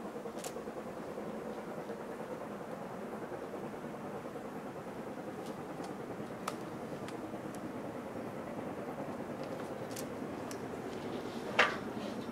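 Two steam locomotives, an LNER B1 and an LMS Black Five, working hard up a gradient while still out of sight, heard as a steady far-off rumble. A brief sharp sound stands out near the end.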